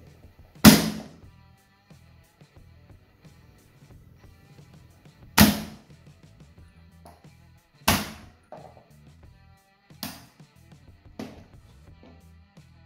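Magnetic contactors of a star-delta motor starter clacking as they switch. A loud clack as the starter is energised, then about five seconds later a second clack as the timer switches it over from star to delta. A few smaller clacks follow later on, over low background music.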